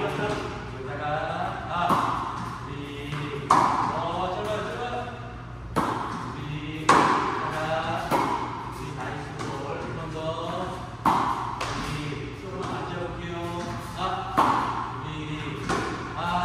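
Tennis balls being struck with rackets during a rally, about nine sharp echoing hits at uneven intervals of one to three seconds, with a man's voice talking over them.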